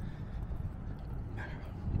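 Wind rumbling on the microphone, with footsteps on a paved path while walking.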